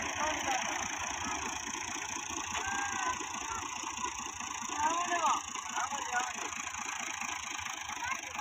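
New Holland Ghazi tractor's diesel engine running steadily while stuck in deep mud, with men's voices calling out over it now and then.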